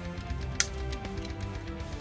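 Background music with sustained tones, and one sharp plastic click about half a second in as the toy's parts are snapped together.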